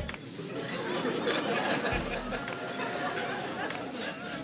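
Background chatter: a murmur of many voices in a room, with a brief low rumble about two seconds in.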